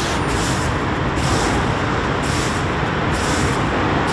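A broom sweeping fallen ginkgo leaves: swishing strokes about once a second over a steady rumble of street traffic.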